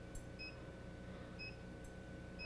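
Faint room tone with a low steady hum, a thin high tone, and short high ticks about once a second.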